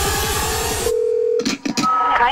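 A techno track with a fast, steady kick drum cuts off abruptly about a second in. It is followed by a half-second low telephone tone, a few clicks and a short higher beep: the lead-in to the German phone network's recorded "Kein Anschluss unter dieser Nummer" (number not in service) announcement.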